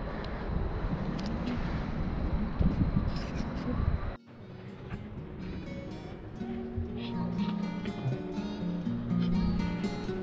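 A dense outdoor rumble of noise that cuts off abruptly about four seconds in. Background music follows, a slow melody of held notes.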